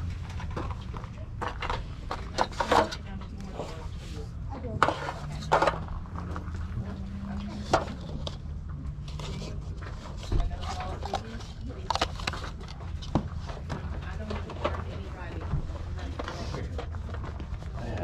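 Plastic kitchenware being picked up and handled, a scatter of light clacks and knocks, over a steady low rumble and faint background voices.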